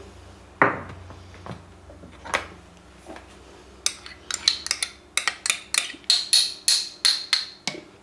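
Metal spoon knocking and scraping against a small ceramic bowl as an ingredient is tipped into a food processor bowl. A few scattered knocks come first, then a quick run of sharp, ringing taps, about three or four a second, in the second half.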